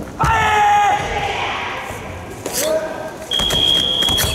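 A karateka's loud kiai shout about a quarter second in, held for nearly a second, during the kata Chatan Yara Kushanku, and a second shorter cry with a sharp snap about two and a half seconds in. Near the end a steady high-pitched beep starts and keeps going.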